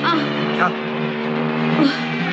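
A film soundtrack's sustained chords, with a person's short wailing cries of "ah" rising and falling over them near the start, about half a second in, and again near the end.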